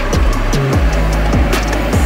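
Background music with a deep bass line and a steady, regular beat.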